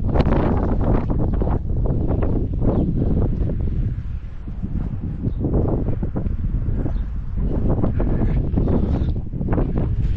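Wind buffeting the microphone: a loud, gusting rumble that swells and dips, easing for a moment about four seconds in.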